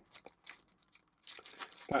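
Thin clear plastic bag crinkling as a photo-etched metal fret is handled in it: a few faint crackles, then a longer crinkle in the second half.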